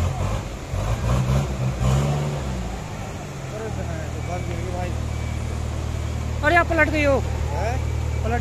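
JCB backhoe loader's diesel engine running close by, its pitch shifting under load for the first few seconds and then holding steady. Men shout briefly near the end.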